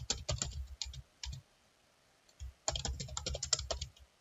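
Typing on a computer keyboard: a quick run of keystrokes, a pause of about a second, then a second, denser run of keystrokes.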